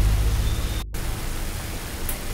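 Chicken pieces and chopped onions sizzling as they fry in a kadai, a steady hiss broken by a brief silent gap just under a second in.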